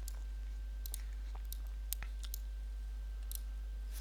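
A computer mouse clicking lightly several times, scattered irregularly, over a steady low hum.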